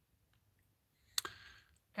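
Near silence, broken about a second in by a single sharp click and a short faint hiss.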